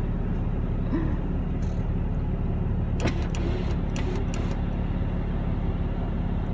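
Steady low hum of a car's engine and road noise heard inside the cabin, with a few faint light clicks about halfway through.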